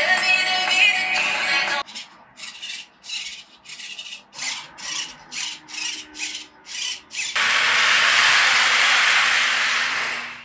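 Background music: a dense opening phrase, then a sparse beat of short swishing hits about twice a second, then a sustained noisy swell from about seven seconds in.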